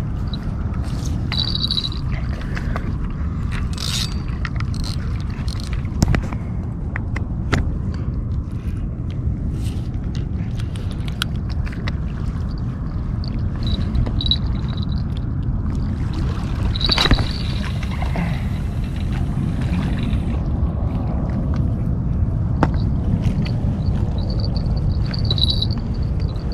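A small bell clipped to the fishing rod tinkles briefly several times as the rod moves. Under it runs a steady low rumble with occasional clicks.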